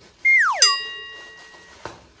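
An edited-in sound effect: a quick falling pitched glide, then a bell-like chime that strikes sharply and rings away over about a second.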